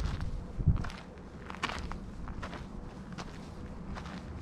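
Footsteps of a walker on stone paving, about one step every 0.8 seconds, with a low rumble and a single low thump in the first second.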